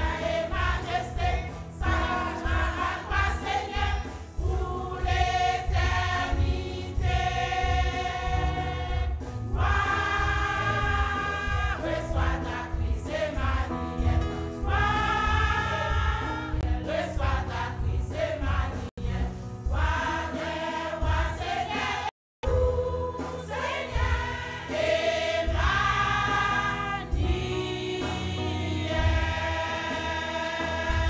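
A women's church choir singing a gospel hymn together over a steady low beat. The sound cuts out for a moment about two-thirds of the way through.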